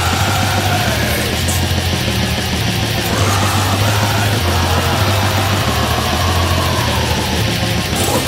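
Heavy metal song: a loud, dense wall of distorted instruments over programmed drums, with a low bass line moving between notes.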